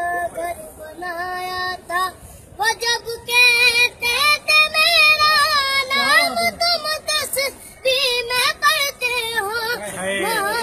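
A high-pitched voice singing, in short phrases at first, then longer, louder held notes with a wavering pitch from about three to six seconds in, then short phrases again.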